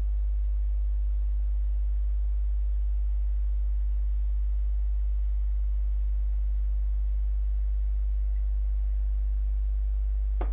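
A steady low electrical hum, unchanging in level, with no other sound over it. It is typical of mains hum picked up by the recording equipment.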